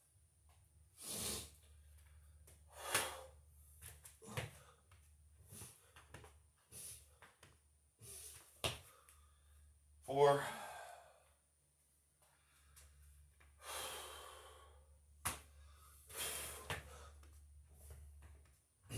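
A man breathing hard between burpees, with a loud breath every second or two and a voiced sigh about ten seconds in. A couple of sharp knocks can be heard, and a faint low hum runs underneath.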